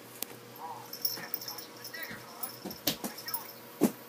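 A kitten thrashing on a carpeted cat tower, its body and paws knocking against the post and platform in a few sharp thumps, the loudest near the end.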